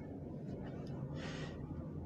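Low steady background hum, with one short, airy intake of breath a little over a second in.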